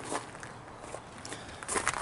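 Footsteps on gravel: a few light steps, with louder steps near the end.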